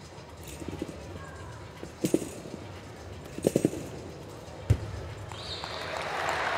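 Double mini-trampoline in use: a few short creaks and thuds from the springs and bed, then one heavy thump of a landing on the mat about three-quarters of the way through. Applause swells near the end.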